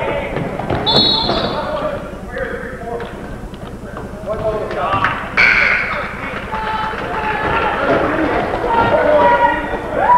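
Gymnasium sound of a basketball game in play: voices from the crowd and players, a basketball bouncing on the court, and a short high squeak about a second in.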